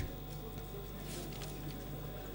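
Quiet room tone in a large hall: a steady low hum under faint, indistinct background noise, with no clear sound events.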